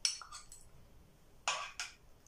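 Light clinks and taps of kitchenware as caramelized apple pieces are lifted from a frying pan and laid into a glass baking dish: one at the start, then two stronger short sounds about a second and a half in.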